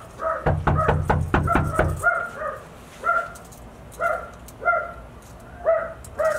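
A fist pounding rapidly on a wooden front door, about seven quick knocks in the first two seconds, while a dog barks repeatedly behind it. The barking carries on after the knocking stops, in short single barks spaced about a second apart.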